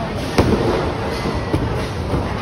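Bowling alley din of balls and pins, with one sharp crack about half a second in and a smaller knock later, typical of a bowling ball striking pins.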